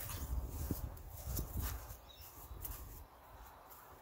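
Faint footsteps and a few light knocks in the first couple of seconds, fading away, over a low outdoor rumble.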